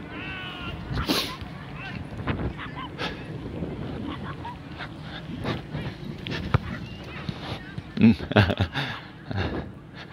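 Players' voices calling out across the field, loudest in a run of shouts near the end. A short high-pitched cry comes about half a second in, and a few dull knocks are scattered through.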